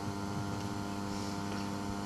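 Steady electrical mains hum, a low buzz with a ladder of evenly spaced overtones.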